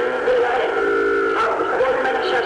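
Voices singing, with one note held steady for about a second near the middle.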